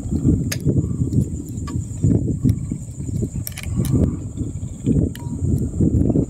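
Wind buffeting the microphone in uneven low gusts, with a steady high-pitched insect drone behind it and a few faint clicks.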